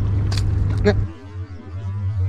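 Wind rumbling on the microphone, with two sharp clicks in the first second. About a second in it drops suddenly to a quieter low hum.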